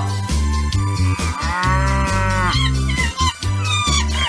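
Bass-heavy music beat with an animal-call sound effect dropped into the middle: one long call that rises and then falls in pitch, lasting about a second and a half.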